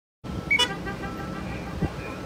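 Road traffic with vehicle engines running and a short, loud vehicle horn toot about half a second in.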